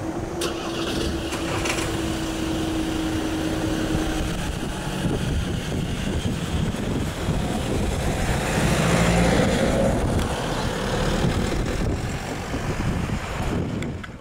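Road traffic moving off over a level crossing once the barriers lift: car and van engines pulling away, with tyre noise and one engine audibly accelerating about nine seconds in. A steady single tone sounds for the first four seconds.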